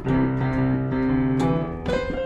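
Casio Privia digital piano playing a slow blues passage: a chord struck at the start and held, with new notes struck near the end.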